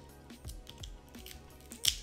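Raw shrimp shell crackling as it is peeled off by hand, in small clicks with a sharper crackle near the end, over soft background music.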